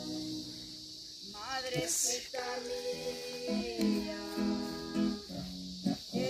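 Live singing with acoustic guitar accompaniment, a folk song of praise. The playing is softer in the first second, then the voice comes in about a second and a half in with long held notes.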